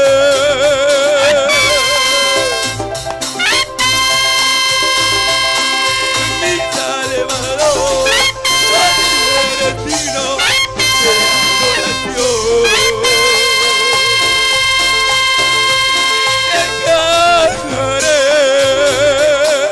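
Live Latin-style band music without vocals: trumpet, trombone and saxophone play long held notes over bass and drums. A wavering melody line with vibrato comes in at the start and again near the end, with a few quick upward slides between.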